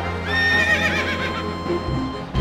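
A horse whinnies once: a short, quavering call of under a second, about a third of a second in. A low, steady drone of dramatic background music runs beneath it.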